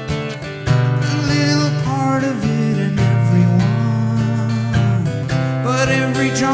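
Live acoustic music: a strummed acoustic guitar with a wavering, gliding melody line over it.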